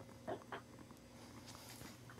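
Quiet room tone with a faint steady hum and two soft, brief sounds a third and a half second in.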